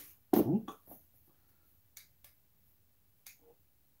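A short vocal sound about a third of a second in, then three faint clicks as the push button of a small battery-powered camping lantern is pressed and held to switch it on.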